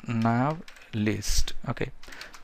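Computer keyboard typing: a short run of key clicks, with a voice speaking over it.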